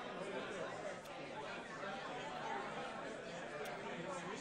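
Chatter of many people talking at once: overlapping conversations with no single voice standing out.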